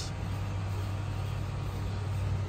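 Steady low hum of an idling vehicle engine, even and unchanging in pitch.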